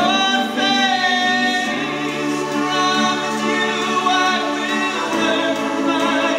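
A male singer performing a song into a microphone over musical accompaniment, holding long notes.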